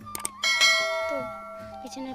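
Two quick clicks, then a bright bell chime that rings and fades over about a second and a half: the sound effect of a subscribe-button animation, heard over background music.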